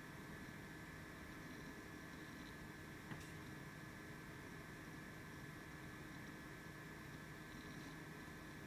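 Near silence: steady low recording hiss with a faint hum, broken by one faint click about three seconds in.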